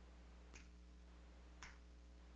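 Near silence with a low steady hum, broken by two faint computer clicks about a second apart, from keys or a mouse button.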